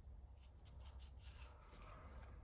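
Near silence: room tone with a low hum and a few faint, light rustles and clicks of trading cards being handled and set down.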